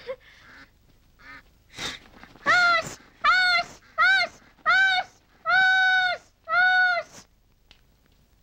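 A domestic duck calling loudly six times in quick succession, each call rising and falling in pitch, the fifth held longest.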